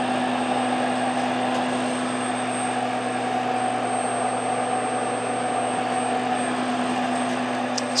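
Steady fan-like whir with a low, even electrical hum from an idling print-and-apply label applicator with a tamp-down pad, running unchanged throughout.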